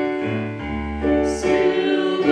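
Piano playing held chords as a song's accompaniment, with a new low bass note about half a second in and a short breathy hiss about a second and a half in.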